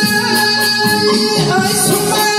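Live band music with a man singing into a microphone over steady held notes and a plucked string instrument, kept to an even beat of about four strikes a second.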